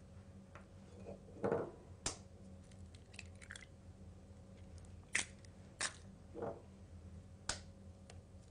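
Hen's eggs cracked one at a time into a glass bowl: a few faint, sharp cracks of eggshell and softer wet sounds as the contents drop in.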